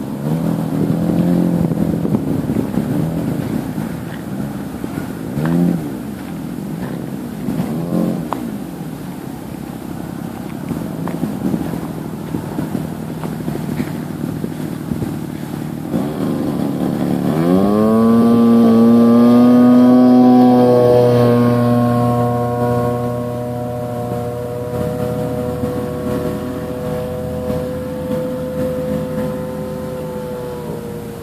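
Radio-controlled model airplane engine running at low throttle with a couple of short blips, then opening up sharply to full throttle a little past halfway for the takeoff, a loud steady high-pitched buzz that carries on as the plane climbs away.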